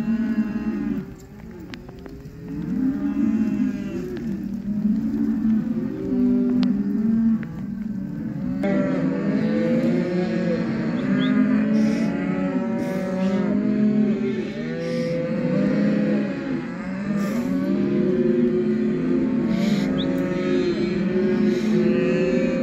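Hereford calves mooing and bawling, many overlapping calls at once, growing denser about eight and a half seconds in.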